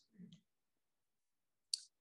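Near silence in a pause between a preacher's sentences, broken by two faint mouth sounds: a soft low one just after the start and a brief sharp click-like sound just before speech resumes.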